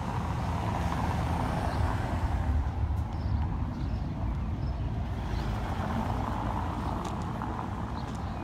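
Road traffic passing, a steady low rumble with tyre noise that swells and fades twice as vehicles go by.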